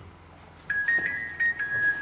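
A simple electronic melody of high beeping notes starts about two-thirds of a second in, stepping between two or three close pitches, with light knocks and clatter alongside.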